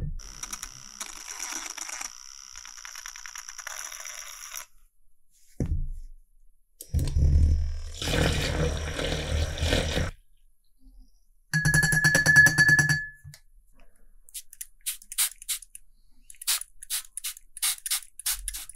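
Handheld battery milk-frother mixer whirring in a glass jar of pink gouache rinse water, stirring the dissolved paint, for about three seconds and again more briefly a little later with a steady pitched whine. Before it a softer steady hiss of water; near the end a run of small light clicks.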